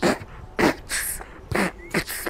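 Vocal beatboxing: about four short, breathy hiss-and-puff mouth sounds roughly half a second apart, laying down a beat for an improvised rap.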